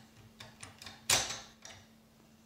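Metal double-bit decoder tool in the keyway of a Securemme 3x3 lock: a few light metallic clicks, then one sharp metallic clack about a second in that rings briefly.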